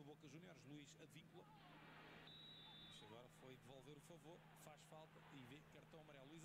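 Faint match-broadcast commentary: a man's voice talking quietly over a steady low hum, with a brief high-pitched steady tone a little after two seconds in.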